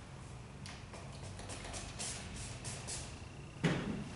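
Trigger spray bottle of vinyl and leather cleaner spritzing a cloth in a run of short hisses, then a single sharp knock near the end.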